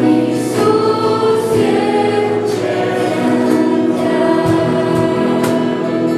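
Girls' voices singing a slow Romanian Christian worship song, holding long notes, accompanied by sustained chords on a Yamaha electronic keyboard.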